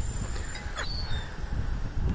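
Outdoor background noise with a low rumble throughout, and a short faint high bird chirp about a second in.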